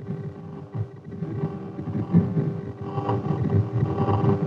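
Audio return from the AN/TPS-25 ground surveillance radar, the Doppler sound of moving light wheeled vehicles. It is a steady hum with an irregular, fluttering low rumble over it.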